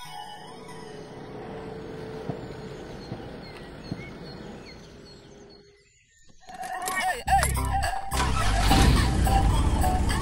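A vintage multi-band radio being tuned: after a stretch of low, steady hiss, gliding whistles and crackle sweep past from about six and a half seconds in. Loud music comes through from about eight seconds in.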